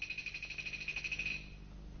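A high, fast-pulsing trill, about a dozen pulses a second, like an insect's call, fading out about one and a half seconds in, over a faint low hum.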